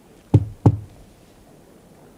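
Two knocks on a door, a third of a second apart, announcing a visitor's arrival.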